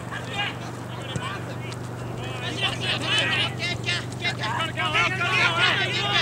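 Distant shouting of players calling to each other across a field during an Australian rules football match, getting busier and louder from about two seconds in, over a steady low hum.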